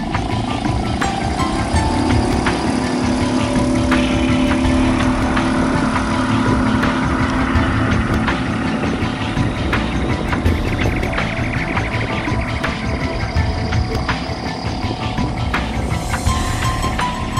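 Small outboard motor running steadily as it drives a one-person inflatable boat across the water, with background music over it.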